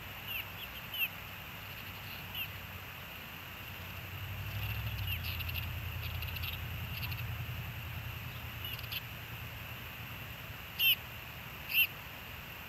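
Osprey giving short, high, downward-sliding chirps: a few scattered calls, then two louder ones near the end. A low vehicle rumble rises and fades in the middle.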